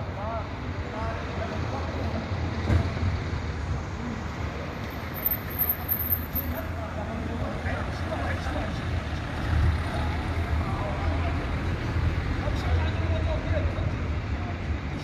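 City street traffic: passing cars make a steady low rumble.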